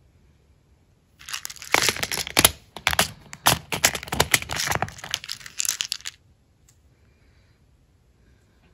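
Small clear plastic storage pods clattering and clicking against each other and the organizer tray as a strip of them is pulled out and handled, with the small charms inside rattling. A dense run of sharp clicks and rattles starts about a second in and stops after about five seconds.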